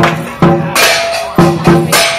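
Percussion music of drum strikes and clashing cymbals, in an uneven beat of about six hits in two seconds.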